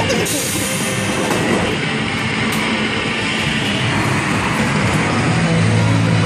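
Arcade game din: steady, dense machine noise from mini-bowling and Skee-Ball lanes, with music playing under it.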